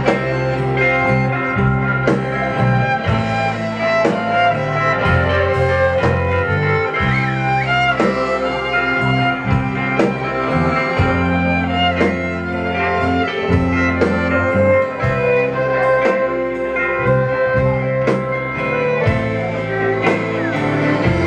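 Live folk-rock band playing an instrumental passage with no singing: fiddle and accordion carry the melody over guitar and a steady beat.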